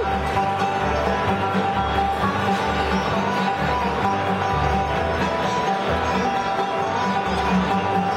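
Live bluegrass band playing: acoustic guitar strumming over upright bass notes that repeat in a steady rhythm, with other plucked strings on top.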